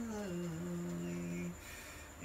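A male voice holds a long, low sung note in a Khmer chapei song. It glides down at the start and breaks off about one and a half seconds in.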